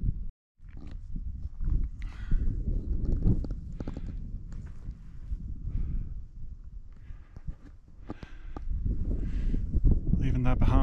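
A hiker walking on a mountain trail: uneven footsteps and breathing over a steady rumble of wind on the microphone. The sound cuts out completely for a moment just after the start.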